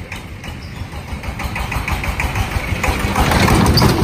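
An engine running steadily, growing louder near the end.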